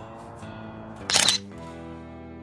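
A quick burst of several digital camera shutter clicks about a second in, the loudest sound, over background music with held notes.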